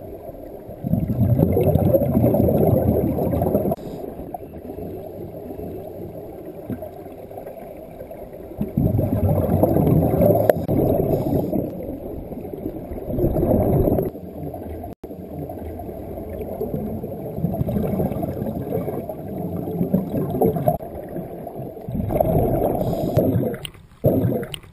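Water noise picked up by an underwater camera just below the sea surface: a low, churning, bubbling rumble that comes in loud spells a few seconds long, with quieter spells between.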